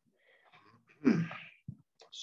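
A person sneezes once about a second in, with a faint intake of breath just before it. A short click follows.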